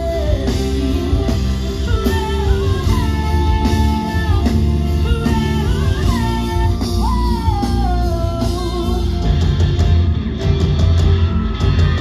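Live rock band playing through a PA: a female singer's vocal over electric guitars, bass and drums. The singing stops about nine seconds in, and the band plays on with heavier drum and cymbal hits.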